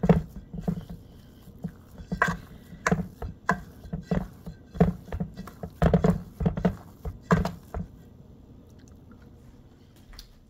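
A metal spoon stirs and mashes a thick, crumbly paste in a stainless steel bowl, with irregular knocks and scrapes against the bowl's side and wet squishing. The sound stops about seven and a half seconds in.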